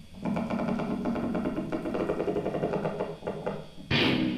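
Free improvisation for amplified wooden board and electric guitar: a dense, fast rattling scrape runs for about three and a half seconds. It is cut off by a sharp, loud electric-guitar attack near the end that rings on.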